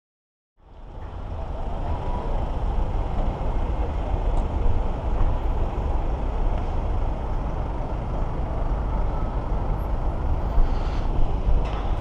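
Busy city street traffic: a steady rumble of cars and buses with a heavy low end. It fades in from silence about half a second in.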